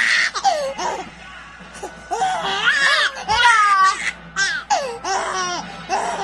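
A baby laughing in several bouts, some with quick pulsing breaths.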